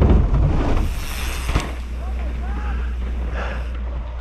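Wind buffeting a helmet camera's microphone as a mountain bike rides fast down a dirt trail. A hard thud at the start comes from the bike landing a jump, and a sharp knock follows about a second and a half in. Faint voices can be heard behind.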